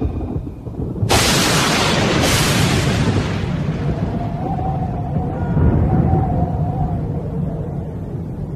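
Thunder: two sharp cracks about a second apart, starting about a second in, rolling off into a long low rumble, with faint music underneath.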